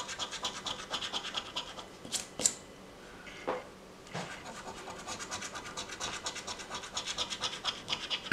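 A coin scratching the coating off a paper scratch-off lottery ticket in quick, rapid back-and-forth strokes. There is a short break with a couple of sharp taps about two seconds in, then the scratching resumes.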